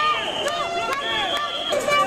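Several people in a street crowd shouting over one another, with a high steady tone sounding twice.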